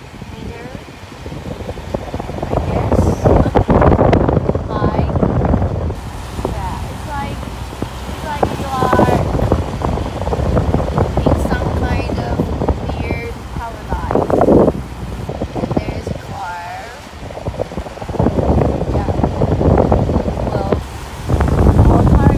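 Wind buffeting the microphone from a moving car on a mountain road, surging and easing in gusts over the low rumble of the car.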